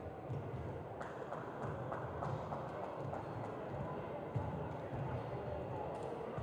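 Basketballs bouncing on a hardwood court, a scatter of short knocks, over faint indistinct voices.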